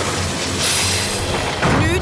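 Cartoon magic sound effect of a bubble being frozen solid by an ice ray: a dense, noisy hiss that turns bright and high for about a second, over a low rumble.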